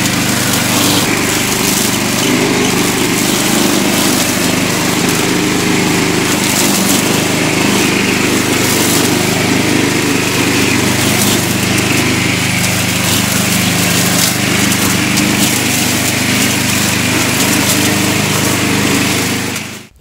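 A Briggs & Stratton 675 series 190cc single-cylinder engine on a walk-behind string trimmer, running loud and steady while its line cuts through tall grass and weeds. The sound cuts off just before the end.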